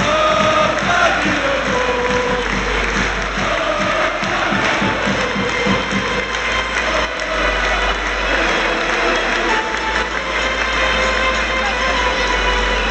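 Music played over a stadium public-address system, with a melody and a steady beat that fades about halfway through, over the hubbub of a large football crowd.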